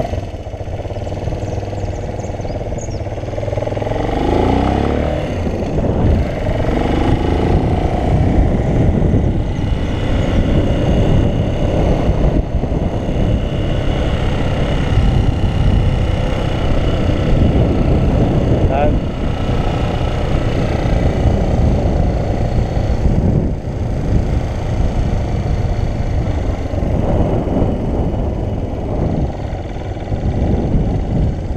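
Motorcycle engine running as the bike rides along a street, its pitch rising a few seconds in as it accelerates, with wind rumbling on the microphone.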